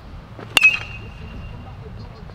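A metal baseball bat hitting a pitched ball about half a second in: a sharp crack followed by a high, ringing ping that fades over about a second.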